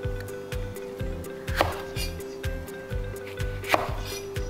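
Two sharp knocks of a kitchen knife cutting through green bell pepper onto a wooden cutting board, about two seconds apart, over background music with a steady beat.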